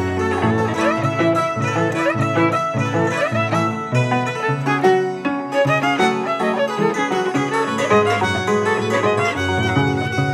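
Andean folk music on violin and a large Andean harp. The violin carries a melody with slides while the harp plucks a stepping bass line.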